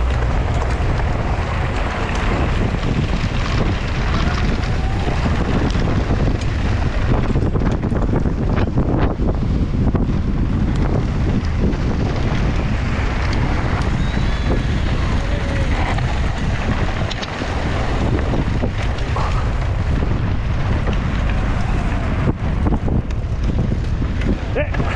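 Wind buffeting the action camera's microphone as a mountain bike descends a dirt track at speed, with tyres running over loose dirt and short knocks and rattles from the bike throughout.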